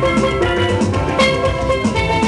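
Steel pan played live, a quick run of bright ringing notes over a steady drum beat.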